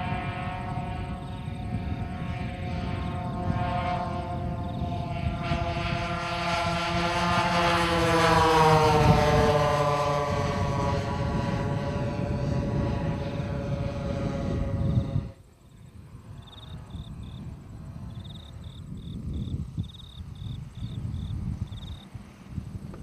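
Engines of a large four-engine radio-controlled model Lockheed Constellation droning as it flies past. The sound grows louder to a peak about eight seconds in, with the pitch dropping as it passes, then cuts off suddenly about fifteen seconds in, leaving quieter wind noise and faint high chirps.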